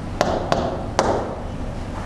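Three sharp taps on an interactive whiteboard's screen as the pen tool and colour are picked from its toolbar, the last about a second in.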